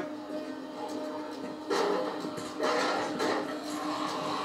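Television drama soundtrack playing: a steady, low, tense music drone, with two short noisy bursts a little under two seconds in and again about a second later.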